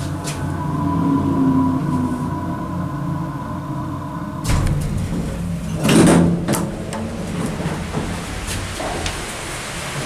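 Hydraulic elevator cab running with a steady hum until it stops about four and a half seconds in, then its center-opening doors sliding open with a rolling rumble and a loud clunk about six seconds in.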